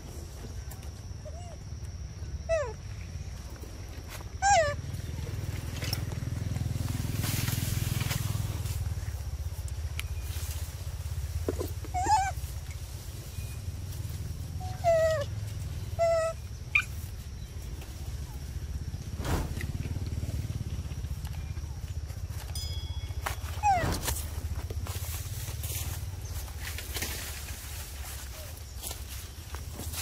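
Macaque calls: about seven short, squeaky calls that fall steeply in pitch, coming irregularly through the stretch. Under them run a steady low rumble, a faint steady high tone and a few light clicks.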